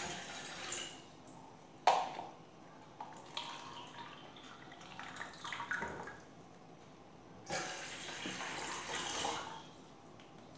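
Water poured from a cup and jug into a steel cooking pot, splashing in two pours: briefly at the start and again for about two seconds near the end. A sharp knock about two seconds in, a container touching the pot.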